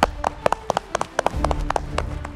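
A few people clapping: scattered, uneven claps, several a second, over a quiet music bed.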